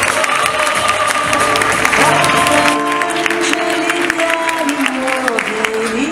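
Music playing with an audience clapping and cheering over it. The applause is strongest in the first half and thins out toward the end while the music carries on with long held notes.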